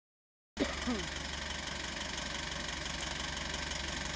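A car engine idling steadily, cutting in abruptly about half a second in after silence, with a steady hiss over it.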